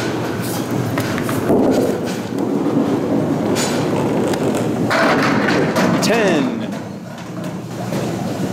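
Candlepin bowling ball rolling down a wooden lane with a steady rumble, then crashing into the pins and deadwood about five seconds in.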